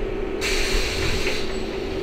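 Inside an Ikarus 412 trolleybus: a steady hum runs under a sharp hiss of compressed air from its pneumatic system, which starts about half a second in and lasts about a second.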